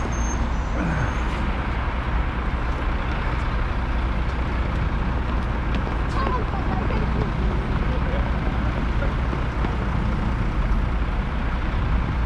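Steady wind rumble on a head-mounted camera's microphone while cycling, over the noise of road traffic and a lorry at a junction.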